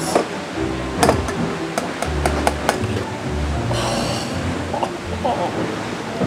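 A metal spoon clinking and scraping in a stainless steel mixing bowl as chocolate mousse is stirred, with a handful of sharp clinks in the first half, over background music.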